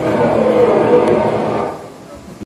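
A crowd of voices singing together in a blurred, wavering chorus, fading down near the end.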